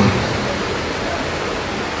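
A steady, even hiss of noise with no speech in it.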